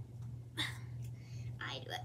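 A girl's short breathy, whispered sounds, twice (about half a second in and near the end), as she twists her back in a seated stretch, over a steady low hum.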